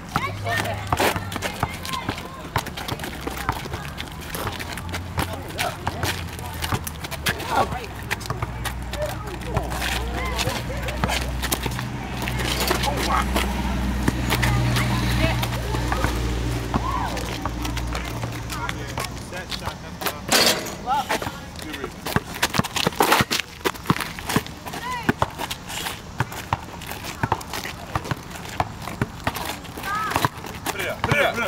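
Outdoor pickup basketball game on an asphalt court: players' voices calling out during play, with scattered sharp knocks and scuffs from the ball and sneakers. A low rumble swells in the middle and fades out a little past halfway.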